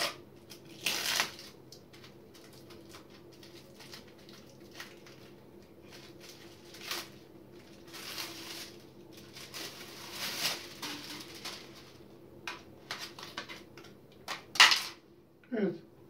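Plastic wrapping being cut and peeled off a new 5-micron sediment filter cartridge: irregular crinkling and tearing sounds on and off, the sharpest one near the end, over a faint steady hum.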